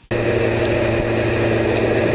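Motorcycle engine running at a steady speed while riding, cutting in abruptly just after the start.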